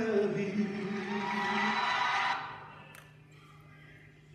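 Worship singing ends on a held note about two and a half seconds in and fades out. A quiet stretch with a faint steady hum follows, broken by a single click.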